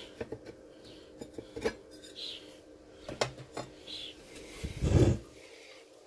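Hand handling of a solar charge controller's plastic cover as it is unclipped and lifted off: a series of light clicks and knocks, with a louder handling thump about five seconds in.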